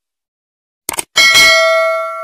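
Subscribe-button sound effect: a quick double mouse click about a second in, followed at once by a bright bell ding that rings on and slowly fades.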